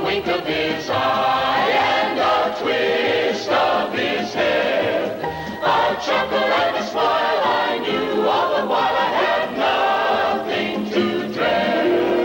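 Choir singing with musical accompaniment on a cartoon soundtrack.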